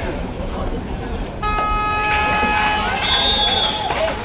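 A horn sounds one long steady note for about two and a half seconds, starting about a second and a half in, over the chatter of a crowd. A brief higher tone joins it near the end.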